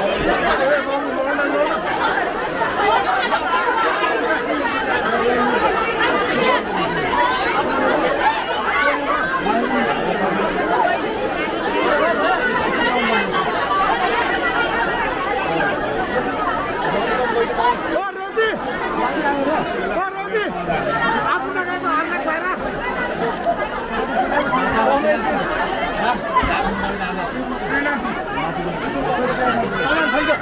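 Dense crowd of women and girls all talking and calling at once, a steady babble of many overlapping voices, dipping briefly about eighteen seconds in.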